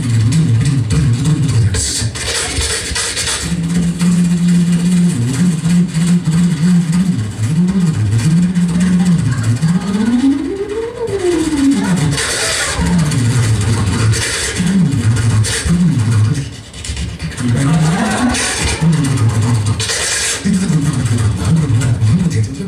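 Voice percussion (beatboxing): a man's voice making a rhythmic bass line of short low notes, with one long slide up in pitch and back down about halfway through, mixed with hissing hi-hat and cymbal-like mouth sounds.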